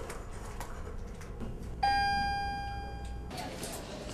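Elevator chime: a single bright ding about two seconds in, ringing and fading for about a second and a half before it cuts off abruptly.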